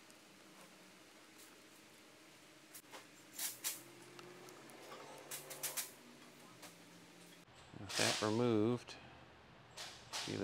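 A few small clicks and light taps of a screwdriver and small plastic odometer parts handled on a workbench, over quiet room tone. A person's voice is heard near the end.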